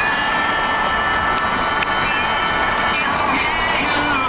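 Music with long held notes over a steady, full background.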